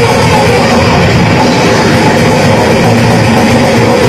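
Death metal band playing live: distorted electric guitars, bass and drum kit in a loud, dense, unbroken wall of sound, recorded from the audience.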